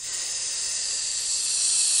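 A steady hissing noise, strongest in the high range, swelling slightly over two seconds and then stopping abruptly.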